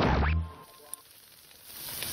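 A short, loud editing sound effect with a falling pitch and a low boom in the first half second, followed by a near-quiet lull. Near the end a steady hiss of meat sizzling on a grill swells in.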